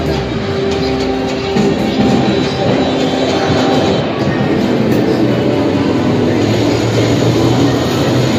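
Loud, continuous arcade din: music and electronic sound effects from many game machines blending together, with no single sound standing out.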